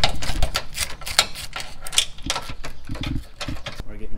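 Hand ratchet with a socket extension clicking in rapid, uneven runs as it loosens a bolt on a car's front end.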